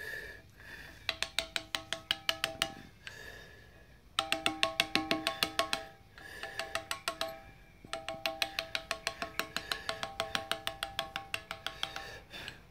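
A brass-headed mallet tapping a steel carving chisel into Indiana limestone. It goes in quick runs of light, ringing strikes, about six or seven a second, with short pauses between runs.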